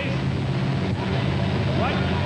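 Two monster truck engines running hard at full throttle side by side as the trucks drive over a row of crushed cars, a steady low drone.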